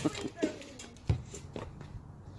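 A basketball bouncing on asphalt as it is chased down after a missed shot: a few dull thuds, the loudest about a second in. A voice is heard briefly near the start.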